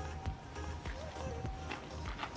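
Background music with a steady low beat, percussive ticks and a wavering melody.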